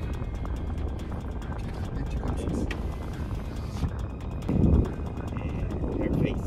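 Background music over the low, steady rumble of the car heard from inside its cabin. A brief low thud comes about four and a half seconds in.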